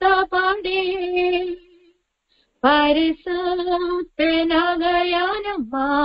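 A woman singing a Tamil Christian song solo and unaccompanied, in phrases of long held notes. There is a short silent breath-break about two seconds in before the next phrase.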